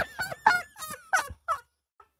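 A man's hearty laughter: a run of about six short bursts of laughs that stops about a second and a half in.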